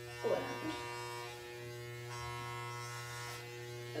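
Corded electric hair clippers with a guard running with a steady hum while blending the hair at the nape of the neck.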